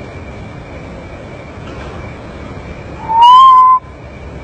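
A common potoo giving one loud whistled note of a little under a second, rising slightly and then held level, about three seconds in. A faint steady high tone and hiss run underneath.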